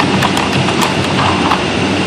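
Irregular hard plastic clicks and clacks of a bone-shaped dog puzzle feeder as a whippet pup paws and noses at its pieces, about half a dozen in two seconds, over a loud steady machine hum.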